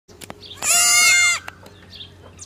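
A baby goat (kid) bleating once: a single loud, high-pitched call lasting under a second.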